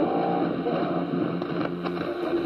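Shortwave AM reception through a Kenwood R-2000 receiver's speaker: steady static and hiss, with the music broadcast faint beneath it. The sound is cut off above about 5 kHz.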